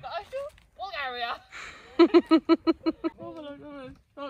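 Women's voices talking, with a burst of quick, rhythmic laughter in the middle.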